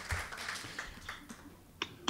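A quiet pause: faint room tone with a few light taps, then one sharp click near the end.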